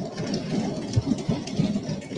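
Steady low background noise of a large assembly hall, with faint indistinct sounds in it.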